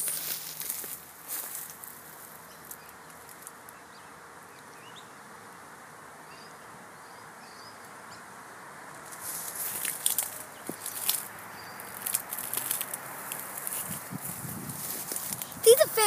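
Quiet outdoor ambience under trees: a steady soft hiss with a few faint bird chirps, then irregular crackling and rustling from about nine seconds in.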